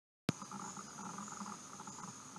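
A click as the recording starts, then faint room tone with a steady high-pitched whine.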